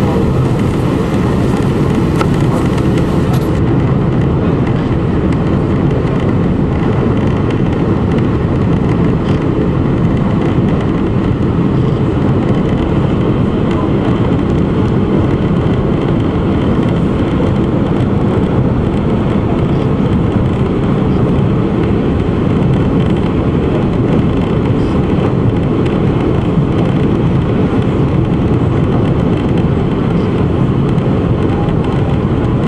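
High-speed passenger ferry under way: a loud, steady rumble of the engines mixed with the rush of the churning wake and wind.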